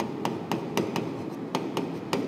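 A stylus tapping and clicking on the screen of an interactive display board while writing by hand: a quick, irregular series of sharp taps, about four a second.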